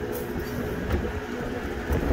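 Tractor and air drill machinery running with a steady hum and a low rumble underneath, as the drill's hydraulic valve is engaged to lower the drill, with wind noise on the microphone.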